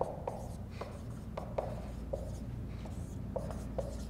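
Dry-erase marker writing on a whiteboard: a scatter of short squeaks and taps as the strokes are drawn, over a low steady room hum.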